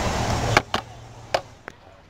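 Steady outdoor street noise that drops away suddenly about half a second in. A handful of sharp, irregular clicks or taps follow close to the microphone.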